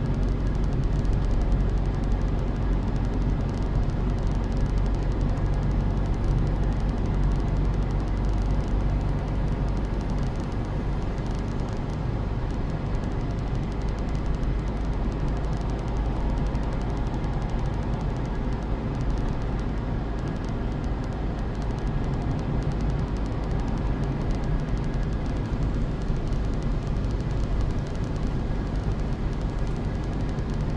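Steady road noise of a car being driven, heard from inside the cabin: a low engine hum and tyre noise on asphalt, holding level throughout.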